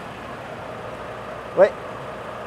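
Steady background hum of an idling vehicle engine, with one short spoken 'ouais' about one and a half seconds in.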